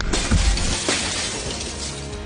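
A car window's glass shattering as it is smashed in, with a second sharp crash of breaking glass just under a second later.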